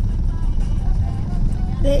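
Steady low rumble of road traffic with motorbikes passing close by, and faint voices in the background.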